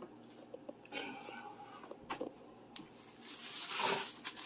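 A plastic oven bag rustling and crinkling as a roast is slid into it, building near the end, with a few light clicks before.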